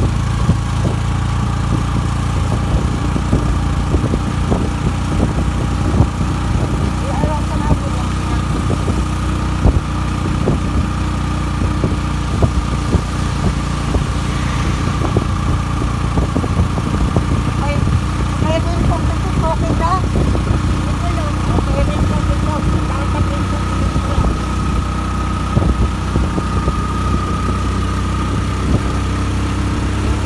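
A vehicle's engine running steadily as it drives through heavy rain on a wet road: a continuous low hum with a faint steady whine, and many small ticks and taps throughout.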